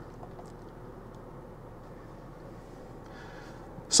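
Steady low background hum inside a parked hybrid SUV's cabin, with a few faint ticks.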